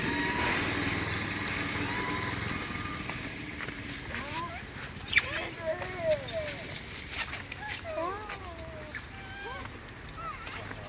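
A motor hums steadily and fades out over the first few seconds. From about four seconds in, a monkey gives a string of short squeaks that rise and fall in pitch, with a few sharp clicks among them.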